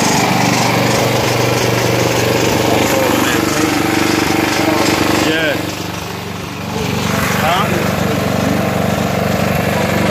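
A small gasoline engine running steadily, with a drop in level for about a second about five and a half seconds in before it comes back up.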